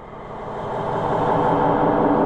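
A rushing, droning sound effect that swells steadily louder, with a steady low hum beneath it.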